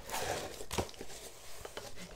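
Soft rustling and crinkling of packing material as a cardboard shipping box is handled and opened, with a few light clicks.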